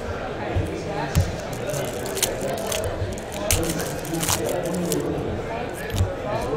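Foil trading-card pack wrappers crinkling and rustling as packs are torn open and cards handled, with several short, sharp crackles. Voices murmur in the background.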